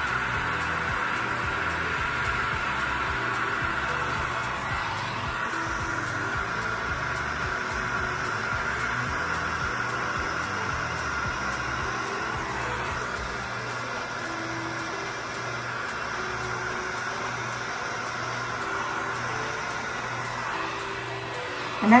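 Heat gun running steadily on high heat and high fan, blowing hot air across wet epoxy resin to push it into a wave. Soft background music plays under it.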